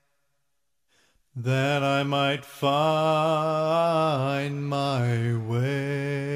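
A moment of silence, then a male a cappella vocal group with low bass voices singing held chords without instruments. There is a short break in the singing, and the chords shift in pitch toward the end.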